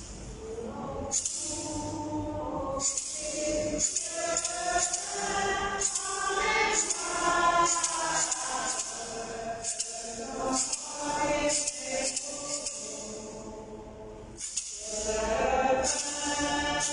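Choir singing a hymn in French-language Mass style, with hand percussion rattling along in stretches; the singing dips briefly near the end, then picks up again.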